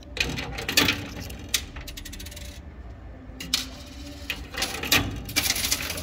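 Coins clinking and clattering inside a coin-pusher arcade machine as another coin is played. The jingling is busiest just after the start and again about five seconds in.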